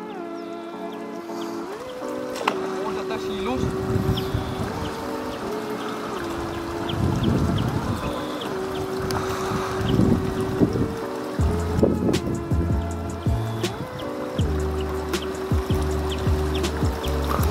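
Background music with long held notes and a low bass line, the pitch stepping every few seconds.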